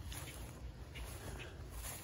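Faint footsteps through grass with a steady low rumble on the microphone as the camera is carried along.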